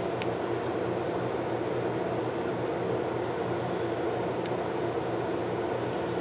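Steady whirring background noise of the kind a room fan or air conditioner makes, with a few faint ticks from washi tape and planner paper being handled.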